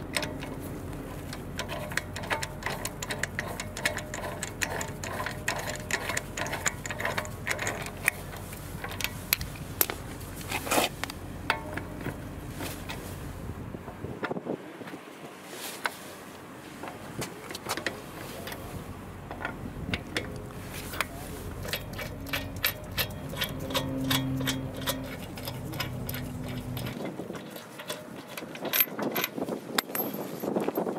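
Lug bolts being unscrewed from an alloy wheel by hand and with the stock lug wrench: many small metallic clicks and rattles throughout.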